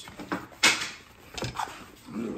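Cardboard box flaps being handled and slid against each other: a few short scrapes and knocks, the loudest about two-thirds of a second in.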